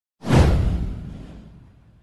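Intro whoosh sound effect with a deep low end, starting suddenly just after the start and fading away over about a second and a half.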